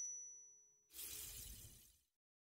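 Intro sound effects: a ringing, chime-like tone fading out, then about a second in a crashing burst like shattering glass that lasts about a second and stops abruptly.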